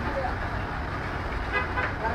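Street noise: steady low traffic rumble, with a vehicle horn sounding briefly near the end.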